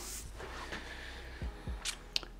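Mostly quiet room with a steady low hum. There is a brief felt-tip marker stroke on paper at the start and a couple of soft knocks about one and a half seconds in as the hand leaves the page. A short intake of breath comes near the end.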